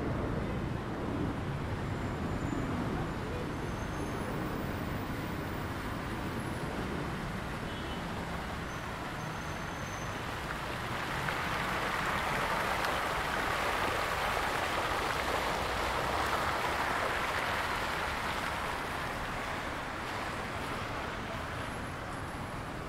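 Road traffic running steadily; from about eleven seconds the splashing of fountain jets grows louder as a dense hiss for several seconds, then fades.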